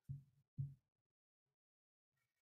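Near silence, broken in the first second by two faint, short, low hums of a voice about half a second apart.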